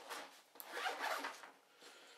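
Zip on a 5.11 Rush 12 nylon backpack being drawn, a short rasping run from about half a second in to just past a second.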